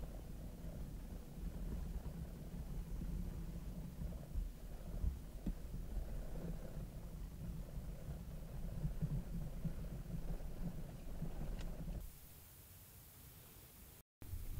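Low, uneven rumble on the camera's microphone that stops suddenly about twelve seconds in.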